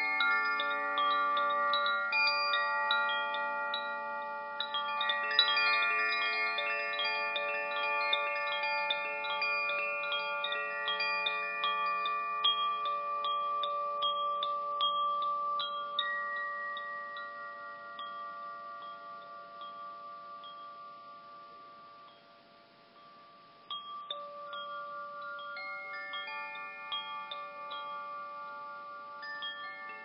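Chimes ringing in many overlapping, slowly fading tones at different pitches. The ringing dies away almost to silence about three-quarters of the way through, then a fresh round of strikes starts up.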